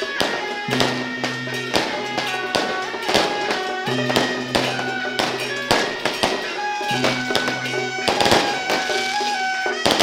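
Traditional Taiwanese temple-procession music: a reedy wind melody of held notes stepping up and down, over a low drone that comes and goes and frequent sharp percussion strikes of drum and cymbal.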